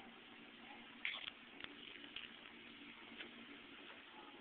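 Faint steady low hum with a few brief small handling sounds: one short scrape about a second in, then a few light clicks.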